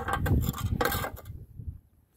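Handling noise of a spirit level being moved about and set down on a precast concrete slab: a few scrapes and knocks in the first second or so, then fading away.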